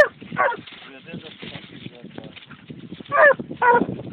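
A dog barking: two barks at the start and two more about three seconds in.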